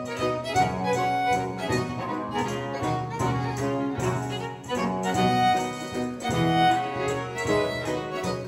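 Baroque string ensemble playing an instrumental passage, several bowed parts moving in steady notes over a sustained bass line.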